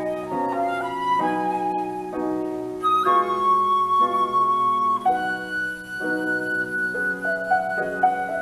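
Flute and grand piano duet in a slow, transparent classical piece: the flute sings a melody of long held high notes over soft, repeated piano chords.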